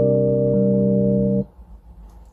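A chord held on a keyboard, steady with no fading, with one lower note changing about half a second in; the keys are released about a second and a half in and the sound stops abruptly.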